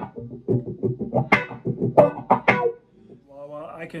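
Electric guitar through a wah-wah pedal: muted, scratched strumming in a quick even rhythm of about six strokes a second, the pedal rocked in double time so each stroke gets a 'wah' accent. The strumming stops about three seconds in.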